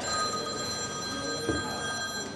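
Mobile phone ringing: a steady electronic ringtone of several high pitches sounding together. A short soft thump comes about one and a half seconds in.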